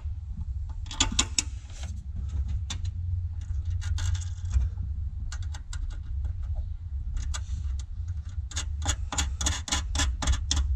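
Small metal hardware clicking and clinking as a car-trunk bracket is worked by hand, with a quicker, denser run of clicks near the end. A steady low hum runs underneath.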